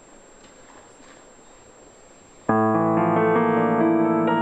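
Faint hall noise, then about two and a half seconds in a grand piano comes in suddenly with a loud chord, its notes ringing on as further notes are added above it.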